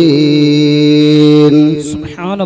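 A man chanting an invocation, holding one long steady note that breaks off near the end.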